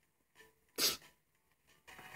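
A single short sneeze just under a second in.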